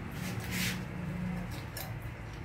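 A brief scrape followed by a few small clicks as a toilet's wall supply valve and pipe fitting are worked by hand, over a steady low hum.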